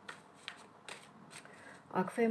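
A deck of tarot cards being shuffled overhand: the cards slip and tap against each other in short, soft strokes, about two a second.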